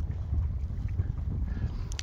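Wind buffeting the microphone: a steady, low rumble of noise with no distinct events.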